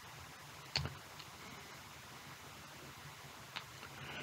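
Faint room hiss with two soft clicks, one a little under a second in and one near the end.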